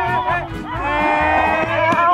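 A bull's moo, one long held call, over background music with a steady beat.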